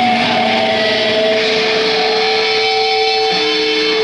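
Live rock band playing loudly, with electric guitars holding long sustained notes that change pitch every second or so.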